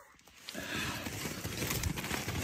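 Close crunching in snow and rustling, the sound of someone crouching and reaching down by hand. It starts about half a second in as a dense crackle of many quick little crunches.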